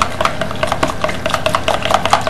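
Liquid being stirred in a plastic measuring jug, with a run of quick, irregular clicks as the stirrer knocks against the jug.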